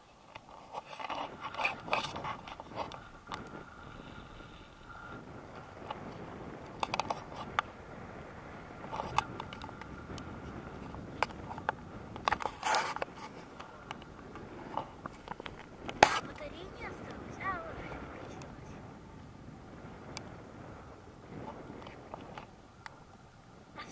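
Wind rushing over a hand-held action camera's microphone in flight under a tandem paraglider, with scrapes and knocks from the camera and its mount being handled. A sharp knock past the middle is the loudest sound.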